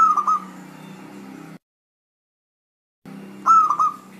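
Zebra dove (perkutut) cooing: a short phrase of three quick whistled notes at the start, repeated the same way about three and a half seconds in. A low background hum runs under each phrase and cuts off abruptly between them.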